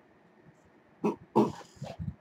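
A man's short laugh in three quick breathy bursts, starting about a second in after a moment of quiet.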